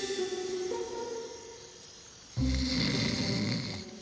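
A short music cue on held notes fades out, then a cartoon voice gives one loud, rasping snore lasting over a second, from the sleeping stone fountain face.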